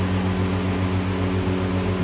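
Steady low machine hum made of several unchanging tones, of the kind a room fan or air conditioner makes.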